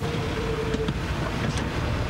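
Car engine running, a steady low rumble with a faint steady hum through the first second.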